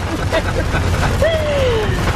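Steady low rumble of road and rain noise inside the cab of a 2018 Ford F-150 Raptor driving on a rain-soaked highway, with a voice briefly over it, including one falling 'ohh'-like sound in the second half.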